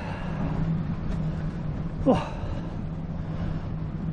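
A motor vehicle's engine running nearby as a steady low hum, with one short sound falling in pitch about two seconds in.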